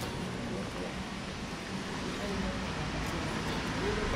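Ambience of a covered shopping arcade: faint, indistinct voices of shoppers and vendors over a steady low rumble.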